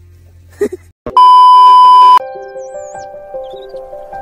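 A loud, high, steady electronic beep lasting about a second, cut in at an edit, followed by background music with long held notes.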